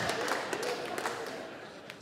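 Audience laughter fading away, with a few scattered claps.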